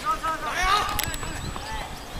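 People's voices talking or calling out for about the first second, then a sharp click about a second in and a few fainter clicks after.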